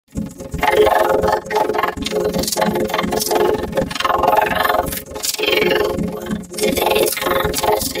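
A cartoon character's voice, heavily processed by an audio effect so that no clear words come through. It runs almost without a break, dipping briefly about a second and a half in and again about five seconds in.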